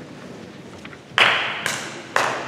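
Two sharp percussive strikes about half a second apart, starting a little over a second in: a drummer tapping out the tempo to count a concert band in, each strike trailing off in the hall's echo.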